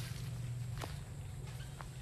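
Footsteps of a person walking, with a couple of light clicks about a second in and near the end, over a steady low hum.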